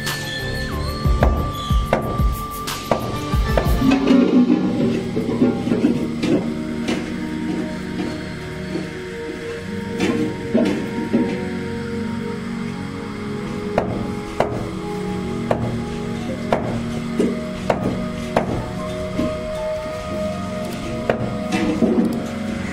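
A meat cleaver chopping goat meat against a wooden stump chopping block, sharp strikes coming in clusters with pauses between, over background music.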